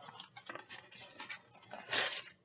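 Paper and envelopes rustling and crinkling as a pile of greeting cards is handled, in quick irregular crackles with a louder rustle near the end.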